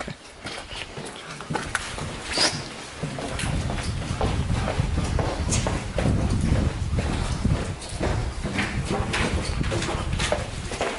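Footsteps on concrete stairs and floors, a person climbing a stairwell and walking through a corridor, with a dense rumble that builds from about three seconds in.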